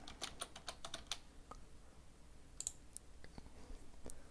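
Computer keyboard being typed on faintly, a quick run of about ten keystrokes in the first second. A few scattered clicks follow later.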